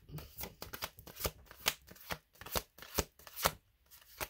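A deck of tarot cards being shuffled by hand: a rapid run of papery clicks and slaps, the loudest coming about twice a second.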